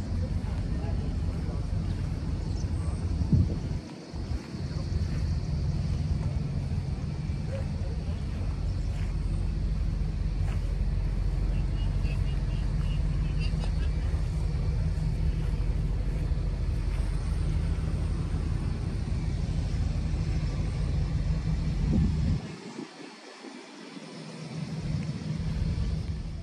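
Outdoor ambience at a truck show: a steady low rumble with faint voices in the background. The rumble drops out briefly about four seconds in and again near the end.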